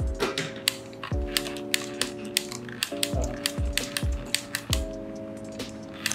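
A plastic 35mm point-and-shoot film camera being wound by hand: a quick, uneven run of fine ratcheting clicks from its film wheel. Background music with sustained chords and a steady beat plays underneath.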